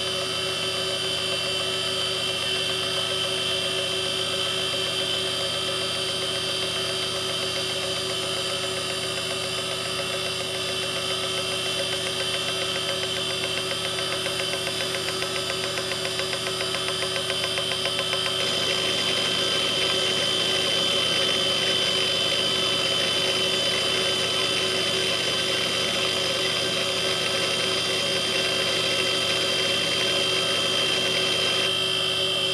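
Fujitsu 3.5-inch IDE hard drive spinning: a steady whine and hum of the spindle motor with several held tones. About two-thirds of the way through, the sound gets slightly louder and hissier.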